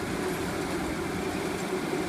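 An engine running steadily at idle, a constant even hum with no change in speed.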